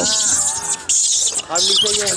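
A large troop of rhesus macaques squealing and chattering, many shrill overlapping calls at once.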